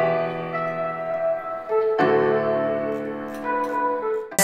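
Sustained piano chords opening a rap track, with a new chord struck about halfway through.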